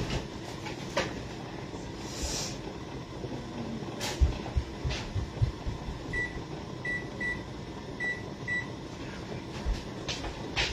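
A kitchen appliance keypad gives about five short, single-pitch beeps in the second half, one for each button press as a cooking timer is set. Earlier come a few sharp clicks and low knocks and a brief rustle.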